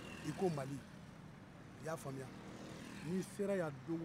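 A voice speaking in three short phrases with pauses between them, over a steady background hum of street traffic.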